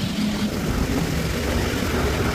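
Wind buffeting the microphone outdoors: a steady, uneven low rumble with no other distinct event.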